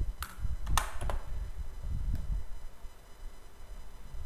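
About three sharp clicks at a computer within the first second or so, over a steady low rumble of background noise.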